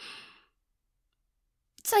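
A woman's short, soft breathy exhale, a sigh, lasting about half a second.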